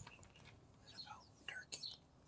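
Faint, brief chirps of small birds: a few short, high notes, each gliding downward, about a second in and again near the end.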